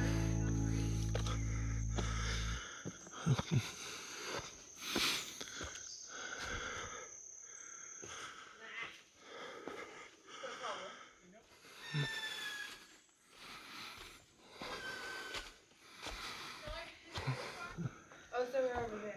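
Background music fading out in the first few seconds, then quiet trail sounds: a hiker's heavy breathing and footsteps on leaf litter, with a few short high chirps.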